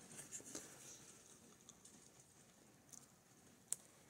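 Near silence with faint handling noise: fingers turning a large plastic miniature, with light rustles and one sharp click near the end.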